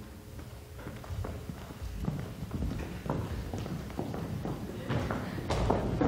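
Footsteps on a wooden stage: a run of irregular taps and thuds as someone walks across the boards and up the set's stairs.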